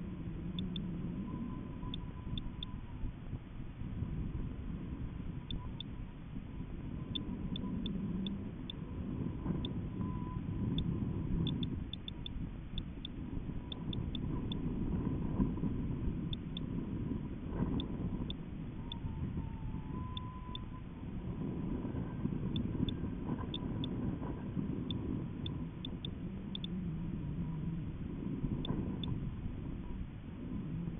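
Steady low rumble of air buffeting the microphone of a camera riding a high-altitude balloon payload in flight, swelling and easing every few seconds, with faint scattered ticks.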